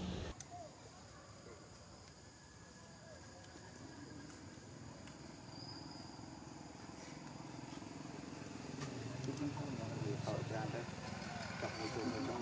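Quiet outdoor background with indistinct voices talking, which grow louder in the last few seconds.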